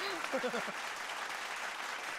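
Studio audience applauding, many hands clapping together, after a brief snatch of voice at the start.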